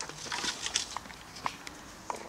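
Metal latch of a wooden garden gate rattling and clicking as the gate is opened, with rustling and scattered sharp clicks from the gate and footsteps.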